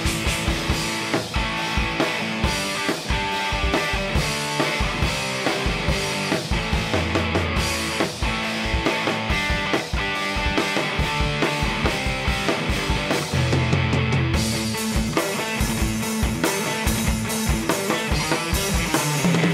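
Electric guitar and drum kit playing a heavy rock riff together, with steady kick-drum strikes a few times a second under the guitar.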